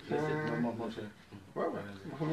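A man's voice making a drawn-out vocal sound at an even pitch, then a shorter one falling in pitch near the end, with no clear words.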